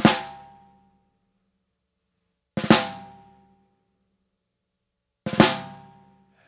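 Snare drum played with sticks: three drags, each two quick grace notes running into one accented stroke. The strokes come about two and a half seconds apart, and each rings out briefly before the next.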